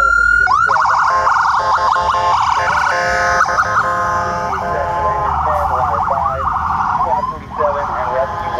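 Ambulance's electronic siren sounding as the rig pulls out on an emergency run: a wail finishing its climb, then switching to fast yelp and warble tones that change pattern several times.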